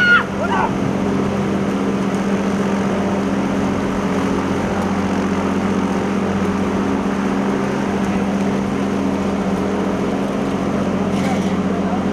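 A steady, low mechanical hum of unchanging pitch, like a running motor, under a shouted voice that ends about half a second in.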